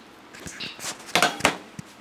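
A spoon scraping and knocking against a stainless-steel bowl and pot as fried onions are spooned onto mashed sweet potato: a few short clicks and scrapes, most of them around the middle.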